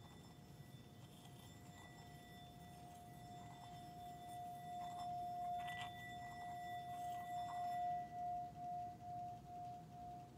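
Metal singing bowl being rimmed with a wooden striker: one sustained ringing tone with a higher overtone that swells louder through the middle. Near the end the tone pulses about twice a second.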